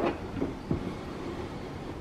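Plastic-bodied sewing machine being turned around on a granite countertop: a steady low scraping rumble with a faint knock in the first second.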